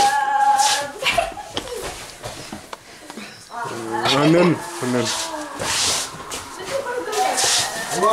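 Human voices making wordless vocal sounds: a held tone at the start, then a long call that swoops up and down in pitch about four seconds in.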